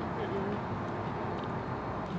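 Steady outdoor background noise with no distinct events, with a faint short voice sound about a quarter second in.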